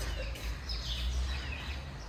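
Steady low background hum with a few faint, high bird chirps in the first second.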